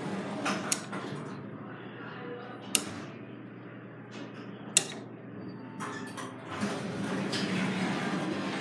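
Elevator cab sound: a steady low hum broken by three sharp clicks about two seconds apart, with the noise building again near the end.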